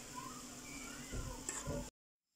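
Faint, distant voices in the background with a few soft knocks in the second half, cut off abruptly just before the end.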